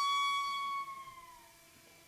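A Venda tshikona reed pipe holding one high, flute-like note that sags in pitch and dies away about a second and a half in, with fainter lower tones held beneath it.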